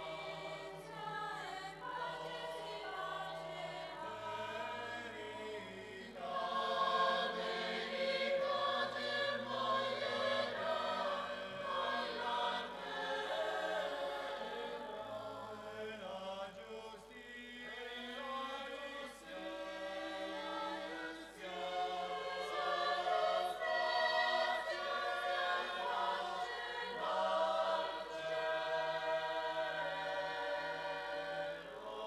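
Mixed choir of men's and women's voices singing the refrain of the responsorial psalm, in sustained notes that change in phrases throughout.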